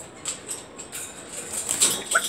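African grey parrot losing its hold on a wire cage roof and dropping, with a run of short flapping and clattering sounds against the cage, the loudest near the end.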